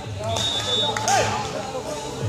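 People's voices talking around an outdoor court, with a brief high steady tone about a third of a second in.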